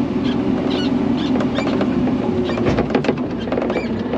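Massey Ferguson tractor's diesel engine running steadily, heard from inside the cab as it drives slowly over rutted ground. A run of light rattles and clicks from the cab comes about halfway through.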